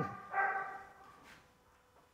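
A dog barking twice in quick succession, the second bark longer and held on one pitch.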